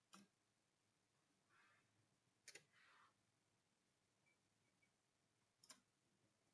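Near silence broken by a few faint clicks from working a computer mouse and keyboard, with a close pair of clicks near the end.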